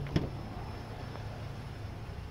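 Pickup truck's rear door handle pulled, a light click of the latch just after the start, over a faint steady low hum.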